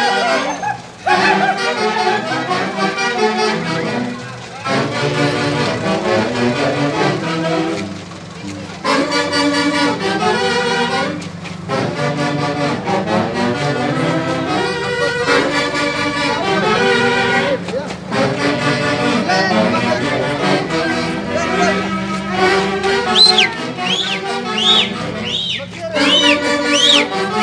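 Live huaylarsh music from a Huancayo street orchestra, its wind instruments carrying the melody in phrases with brief breaks between them. Near the end, short high swooping calls repeat over the music.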